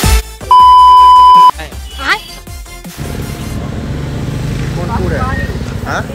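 A loud electronic beep at one steady pitch, lasting about a second, of the kind edited into videos as a bleep sound effect. The music stops just before it, and from about three seconds in a low steady rumble with a voice takes over.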